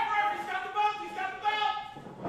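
A person yelling in a high-pitched, drawn-out voice, the pitch sliding up and then held for about two seconds.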